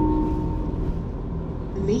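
The lower, second note of a two-note electronic chime in a city bus, ringing on and fading out within the first second. Under it runs a steady low rumble from the bus.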